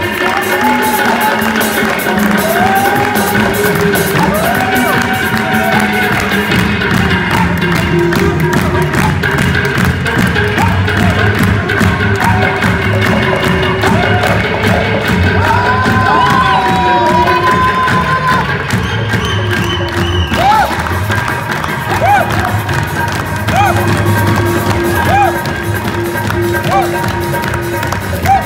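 Live qawwali music: a singer's voice over harmonium and a fast, steady percussion rhythm on tabla and drums, with the crowd cheering along.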